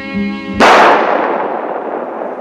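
Music plays, then about half a second in a single loud revolver shot cuts it off, its noisy tail dying away slowly over the following seconds.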